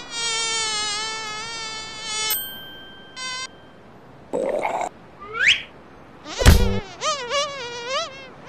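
Cartoon sound effects. A steady, slightly wavering buzz runs for about two seconds, then come short high beeps, a quick rising whistle, a loud thump about six and a half seconds in, and a wavering nasal vocal sound near the end.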